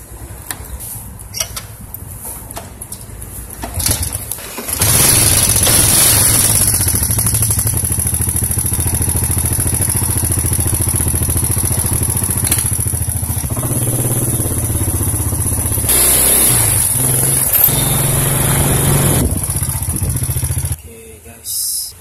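A few clicks as a key is worked into a motorcycle's ignition, then the small motorcycle engine starts about five seconds in and runs steadily and loudly at idle before cutting off abruptly near the end.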